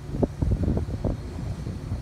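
Outdoor wind buffeting the microphone in irregular gusts, over a low steady rumble.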